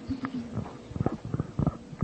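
Microphone handling noise: a run of about six soft, low bumps and rubs, as the microphone is moved or passed for an audience question.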